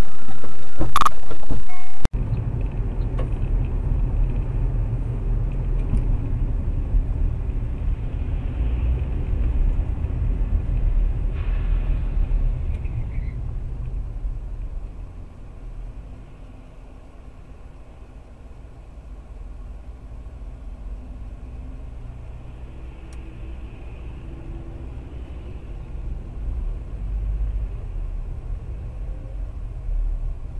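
A car's engine and tyre rumble heard from inside the cabin by a dashcam, low and steady, easing off about halfway through and slowly building again. It opens with about two seconds of much louder noise that cuts off abruptly.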